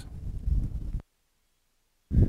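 Wind rumbling on a wireless lavalier mic, with handling noise as the transmitter is fiddled with; about a second in, the audio cuts out to dead silence as the mic system is switched over to its internal microphone.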